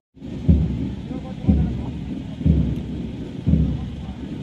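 Bass drum beating a slow, steady march time, one deep boom about every second.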